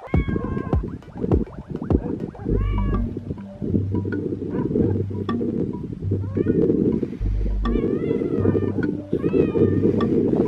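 Cat meowing repeatedly, about half a dozen short calls that rise and fall in pitch, over a steady low rumble with heavy low thumps.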